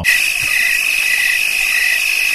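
Recorded cricket chirping sound effect, played loud: a steady high trill with a second chirp pulsing about twice a second, covering the conversation so that no words come through.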